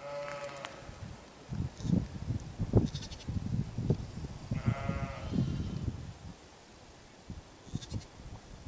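Sheep bleating twice: one short call at the start and another about four and a half seconds in. Irregular low thumps and rumbling, louder than the calls, run between them.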